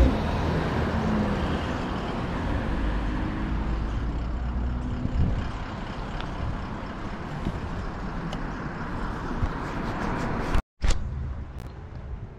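Road noise from an SUV's engine and tyres as it pulls out across the street and drives off, the rumble fading gradually. The sound drops out completely for a moment near the end.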